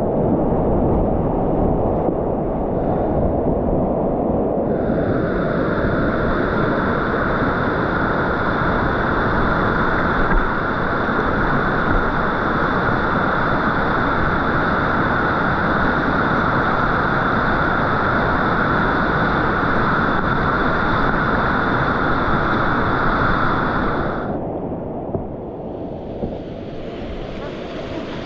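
Rushing whitewater of a river rapid heard close up from a kayak among the waves: a loud, steady rush of water with wind on the microphone. A higher hiss joins about five seconds in and cuts off suddenly a few seconds before the end, where the sound grows a little quieter.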